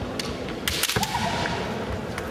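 Bamboo shinai clashing in a kendo bout: one sharp crack, then a quick burst of several cracks just under a second in, followed by a brief shout.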